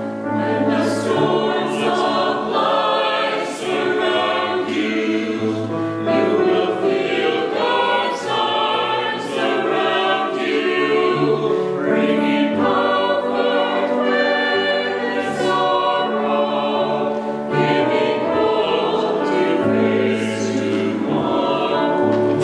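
Mixed church choir of men's and women's voices singing an anthem in held, steady phrases, over a keyboard accompaniment with sustained bass notes.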